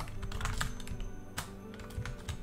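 Computer keyboard being typed on: a quick run of separate keystrokes as a word is entered. Background music plays underneath.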